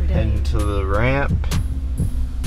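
Hip hop music with a vocal line playing over the car's stereo, with a steady low rumble underneath. The voice holds a long rising note about half a second in.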